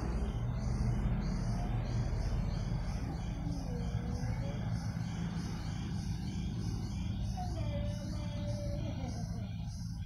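Outdoor field ambience: insects chirping in an even pulse of about two chirps a second over a steady low rumble, with faint distant voices.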